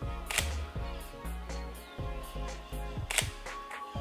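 Camera shutter clicking twice, about three seconds apart: test shots that fire a remote flash through a radio trigger. Background music with a steady bass plays under it.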